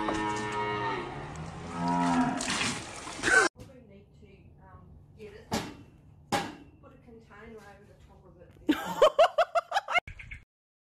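Calf mooing, with a long drawn-out moo around two to three seconds in. Then the sound drops to a quiet stretch with two sharp clicks, and near the end a rapid run of sharp pulses, about eight a second.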